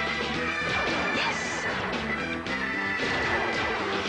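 Cartoon opening-title theme music mixed with a dense run of crashing and smashing sound effects.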